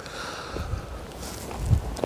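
Wind rumbling on a clip-on microphone with some soft rustling, swelling briefly near the end.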